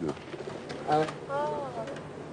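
A white cockatoo giving a short call and then a longer rising-and-falling call, among people's voices.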